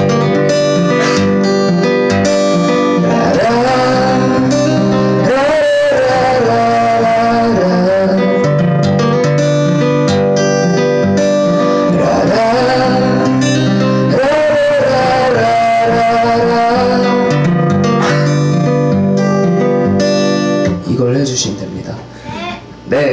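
Acoustic guitar strummed steadily, with a sung melody laid over it twice. The playing breaks off near the end.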